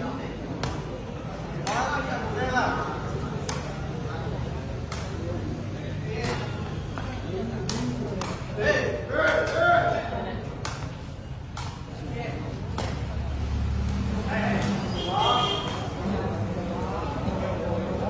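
Repeated sharp cracks of a sepak takraw ball being kicked back and forth over the net during a rally. The hits come a second or two apart and bunch together around the middle, with spectators' voices talking and calling over the play.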